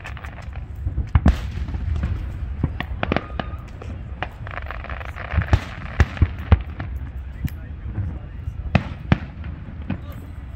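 Aerial fireworks shells bursting in an irregular series of sharp bangs, the loudest about a second in and again around six seconds.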